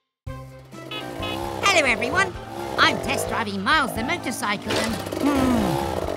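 A brief moment of silence, then animated cartoon voices talking and exclaiming in high, swooping tones over background music, with a steady low hum underneath.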